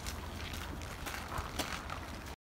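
Steady low wind rumble on the microphone, with a few light crunching footsteps on packed snow.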